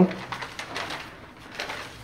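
A pause in speech: faint room noise with a few soft clicks.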